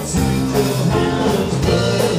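Live rock band playing through a PA, with electric guitars, keyboard and drum kit, and a man singing into a microphone.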